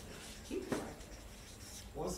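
Felt-tip marker writing on a large flip-chart paper pad, the tip scraping across the paper in short strokes, with one brief louder sound about half a second in.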